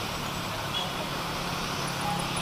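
Steady outdoor street ambience: an even hiss of road noise with a faint low hum underneath, and no music.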